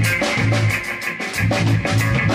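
Live rock band playing: electric bass, drum kit and electric guitar, with a steady beat of drum and cymbal hits over a repeating bass line.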